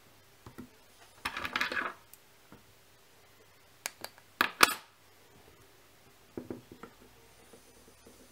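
Fly-tying bench handling: the vise and a metal UV torch being moved. There is a short scraping rustle about a second in, then a quick run of sharp metallic clicks and clinks around four seconds in, the loudest sound here, and a few softer ticks near the end.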